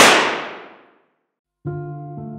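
A single gunshot sound effect: one loud, sudden crack whose echoing tail dies away over about a second. Music with held chords starts near the end.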